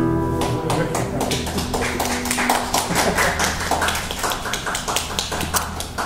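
An acoustic guitar's final chord rings and fades, and about half a second in a small audience starts clapping, the applause continuing to the end.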